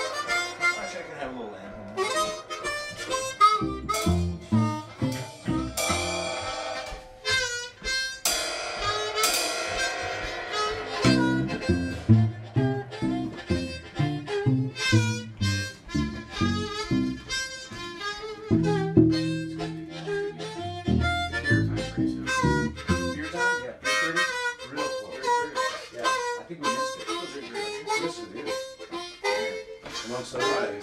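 Several blues harmonicas playing together, with runs of bent and chorded notes. Through the middle stretch, low repeated notes and chords sound underneath the higher lines.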